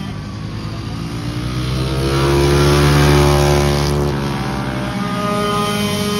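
Racing go-kart engine growing louder and rising in pitch as a kart comes by, then dropping in pitch as it passes, about four seconds in, with other karts running behind it.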